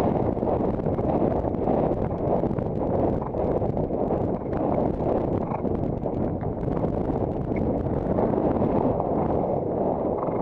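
Wind rushing over a helmet-mounted camera's microphone while riding a horse at a canter, with its hoofbeats and tack sounds faint underneath.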